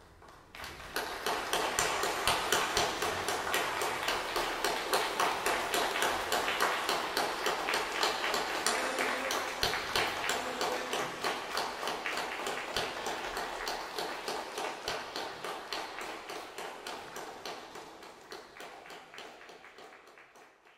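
Concert audience applauding. The applause starts about a second in, falls into a steady rhythm of about three claps a second, and slowly fades toward the end.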